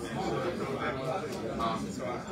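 Indistinct speech in a large room, too unclear for the words to be made out.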